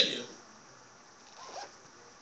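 A man's preaching voice trails off at the start, followed by a pause of room tone with one faint, short sound about one and a half seconds in.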